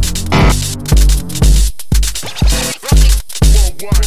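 Live-coded electronic dance music made in TidalCycles: a kick drum on every beat, about twice a second, under chopped, stuttering sample loops that cut out abruptly for short moments.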